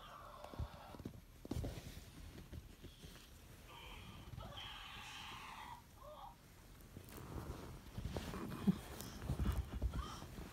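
Horror-film soundtrack playing from a TV in the room: a creepy, wavering groan about four to six seconds in. Low thumps and rustling near the end from handling and play on the sofa.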